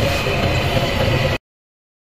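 Steady low hum with a hiss over it, like a running kitchen appliance, cutting off abruptly to silence about a second and a half in.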